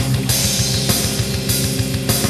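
Heavy metal music in an instrumental stretch between sung lines: guitars over a drum kit, with a fast, steady kick-drum pulse and accented cymbal hits about every half second.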